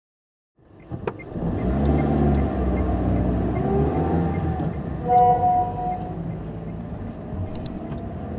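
A car engine and road rumble heard from a moving car, starting about half a second in, with the engine pitch rising and falling. About five seconds in, a steady tone of several pitches sounds for about a second.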